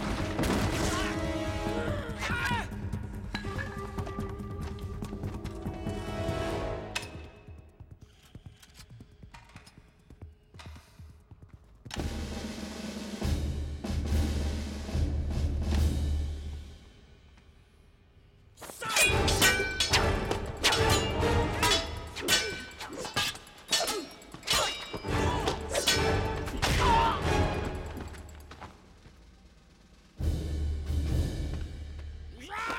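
Film fight-scene soundtrack: a music score with sharp hits, thuds and shattering. The hits come loud at first, ease off into a quieter stretch with a low rumble midway, then return as a fast run of sharp blows in the second half.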